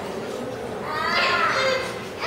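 A young child's high-pitched voice calling out, starting about halfway through, over the steady background noise of a hall.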